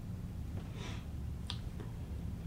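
Steady low room hum, with a short soft rush of noise just under a second in and a single sharp click about a second and a half in, followed by a fainter click.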